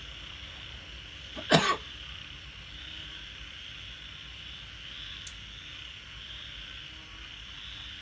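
A person coughs once, a short double burst about a second and a half in, over a steady high chirring of night insects. A faint click comes about five seconds in.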